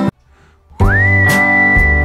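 Background music with guitar that stops for well under a second near the start. It comes back with a high melody note that slides up and is then held steady.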